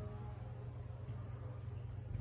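Singing insects trilling steadily at a high pitch, with a low steady hum underneath.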